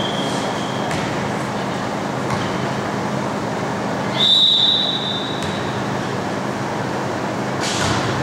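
Volleyball referee's whistle over steady gym crowd noise: one short blast tails off about a second in, then a single longer, louder blast comes about four seconds in. This is the whistle that authorises the serve. A sharp knock sounds near the end.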